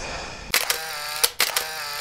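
Camera shutter sound, two quick double clicks as pictures are taken, after a steady hiss in the first half second.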